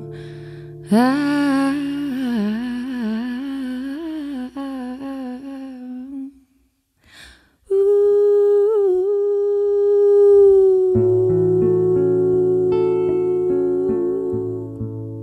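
A woman's voice sings a wordless line with little or no accompaniment, the pitch bending and wavering, then, after a short break, holds one long steady note. Acoustic guitar chords come back in under the held note about eleven seconds in.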